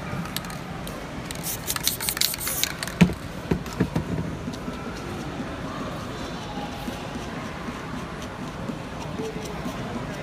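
Spray paint can hissing in a few short spurts about a second and a half in, followed by a few sharp knocks.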